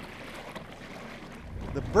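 Steady wash of wind and lake water, joined about one and a half seconds in by the low rumble of a lake ferry under way.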